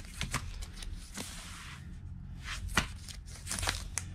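Vinyl LP jackets in plastic sleeves being flipped through in a crate: a run of light clicks and slaps as records tip against each other, with a longer sliding rustle a little over a second in.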